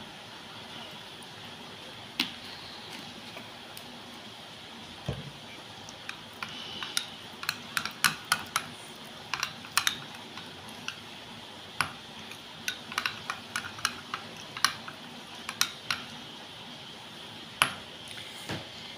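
A metal spoon stirring a thick face-pack paste in a bowl, clinking against the bowl in quick, irregular taps that come thickly from about six seconds in.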